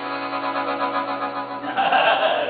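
Piano accordion holding the closing chord of the song, its reeds sounding with a slight waver. A voice breaks in near the end.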